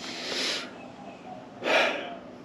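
A man breathing, close to the microphone: two audible breaths between phrases, a longer one at the start and a shorter, louder one near the end.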